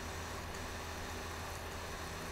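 Steady low electrical hum with a faint hiss, the room tone picked up by a desk microphone; no distinct events.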